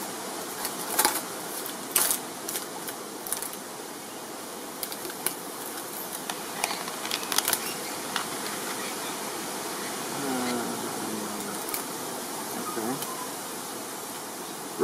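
Cardboard box and clear plastic packaging of a clip-on phone lens kit being handled and opened: scattered sharp clicks and crackles over a steady rush of wind on the microphone.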